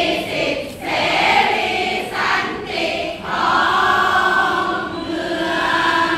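A large group of voices singing and chanting a cheer song in unison, in a few phrases that end in long held notes.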